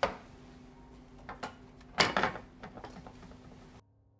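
Handling knocks and clicks: a sharp knock at the start, two small clicks, then a louder clattering knock about two seconds in, over a low room hum that cuts off shortly before the end.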